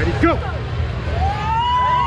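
Spectators yelling encouragement at the start of an arm-wrestling pull. A short shout comes near the start, then a long, high, held yell from a little after a second in, with other voices shouting over the hall's crowd noise.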